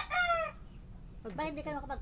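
Rooster crowing: the drawn-out tail of a loud crow that ends about half a second in.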